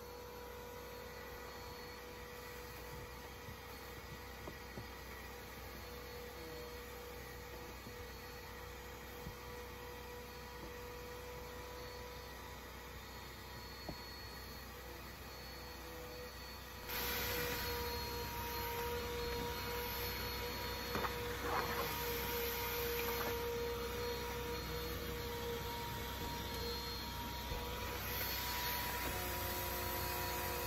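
Electric vacuum cleaner running with a steady hum, becoming louder and hissier about seventeen seconds in as it sucks at the carpet, with a few small clicks of debris going up the hose.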